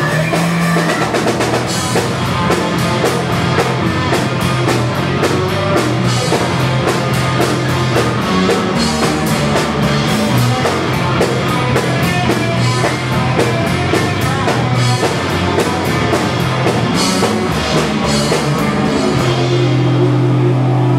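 Live rock band playing loud, with fast, driving drumming on a drum kit under electric guitar and bass. Near the end the drumming thins out and a low chord is held ringing.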